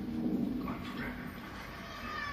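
Film soundtrack played over cinema speakers and picked up by a phone: a low, wavering voice-like sound in the first half second, then quieter effects.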